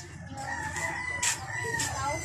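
A bird's long, drawn-out call, starting about half a second in and held for about a second and a half with a slight rise and fall in pitch.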